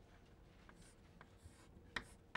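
Chalk writing on a chalkboard: a few faint short scratching strokes, then one sharper click of the chalk against the board near the end.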